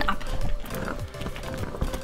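Thick homemade glue slime squelching and clicking irregularly as it is stirred with a spatula, with background music underneath.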